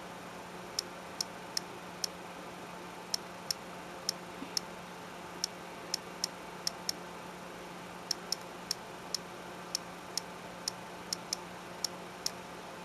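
Key clicks from an iPod touch's on-screen keyboard as a terminal command is typed: about two dozen short, sharp, high ticks at an uneven pace, in runs with short pauses between. A faint steady hum lies underneath.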